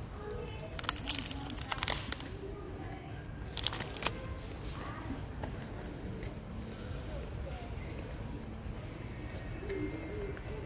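Shop ambience: a steady low hum with faint voices in the background. Sharp clicks and crackles of handled plastic merchandise come about a second in and again around four seconds in.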